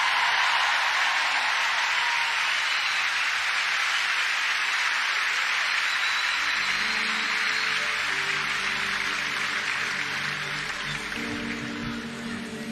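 Concert audience applauding, the applause slowly fading. About halfway through, an instrument starts playing soft held notes underneath.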